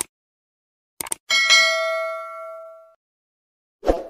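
Two quick click sound effects, like a mouse click on a button, then a bell ding that rings out and fades over about a second and a half; another short click comes near the end.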